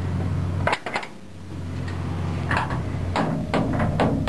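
Steel cab door of an old blast drill being opened: a sharp metallic clank under a second in, then a quick run of knocks and clatters near the end as someone climbs into the cab. A steady low drone runs underneath and drops away briefly after the first clank.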